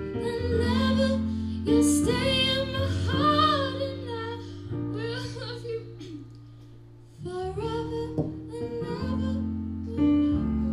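A woman singing live over held keyboard chords. Her voice drops out around the middle while the chords sustain and fade, then she comes back in near the end.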